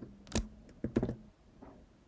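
A few separate computer keyboard key presses, about five short clicks, the clearest two about half a second apart near the start and around one second in.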